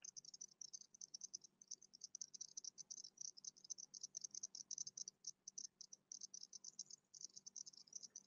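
Near silence, with a faint, rapid, high-pitched crackle of irregular ticks throughout.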